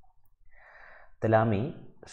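A short, soft in-breath lasting about half a second, followed by a voice resuming speech.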